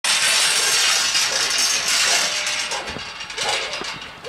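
Loud rattling and rustling as a team of officers pushes through a metal garden gate, with the clatter of gear as they move, easing off after about two and a half seconds.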